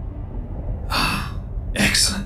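A person's sharp intake of breath, a short gasp about a second in, over a steady low background hum.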